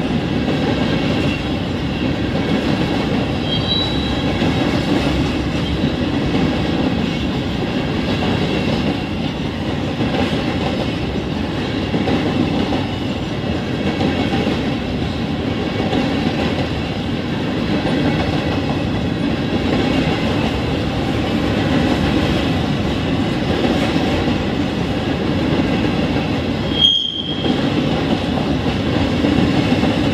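Freight train of loaded covered hopper cars rolling steadily past, wheels clattering over the rails, with a couple of brief high wheel squeals. Near the end the sound cuts out for a moment.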